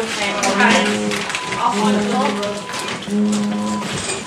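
A bedside medical monitor alarm sounding a repeated tone, each tone just under a second long with a short gap, about one every second and a half, over faint clicks and low voices.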